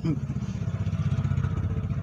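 Diesel truck engine idling steadily, a low rumble with a fast, even pulse, heard from inside the cab.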